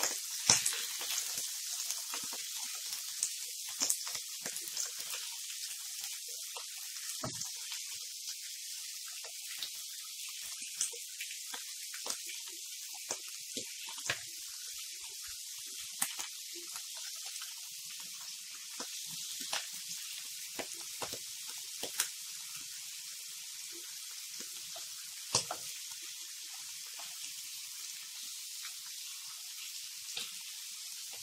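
Sliced meat and onions sizzling in a frying pan as a steady hiss. Scattered clicks and scrapes come from a spatula stirring them against the pan.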